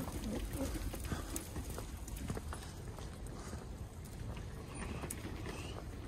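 Footsteps on stone paving, a run of irregular clicking steps over a steady low rumble.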